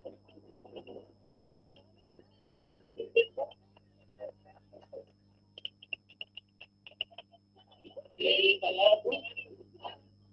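Faint, thin voices from a screen-shared video playing through a video call, coming in short scattered bursts with a louder stretch near the end, over a steady low hum.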